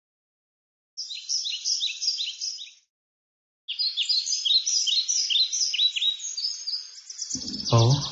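Bird chirping: quick, high, repeated chirps at about three a second, in two bouts, a short one about a second in and a longer one after a brief gap.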